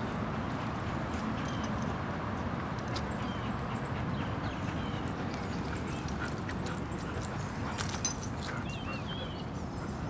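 Steady outdoor background noise with faint short high chirps scattered through the second half and a brief patter of clicks about eight seconds in.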